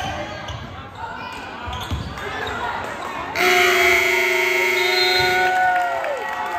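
A basketball dribbling on a gym floor amid players' voices, then about three and a half seconds in a scoreboard horn sounds for about two seconds, marking the end of the game on an expired clock, with shouts rising over it.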